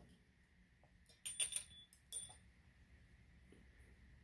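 Small metal candle-care tools (snuffer, wick trimmer, wick dipper) clinking lightly as they are handled: a few faint clicks with a brief ringing a little over a second in, and another short clink about two seconds in.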